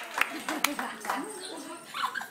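A couple of last handclaps dying away, with low voices murmuring in the room.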